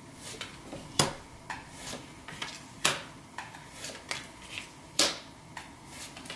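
Tarot cards being dealt and laid down on a table one after another: a series of short, sharp card snaps and taps, the three loudest about a second in, near the middle and about five seconds in.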